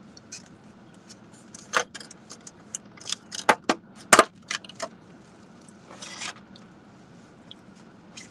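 Crackling and clicking of a clear plastic takeout container being handled and opened, a quick run of sharp clicks in the middle and a short rustle about six seconds in.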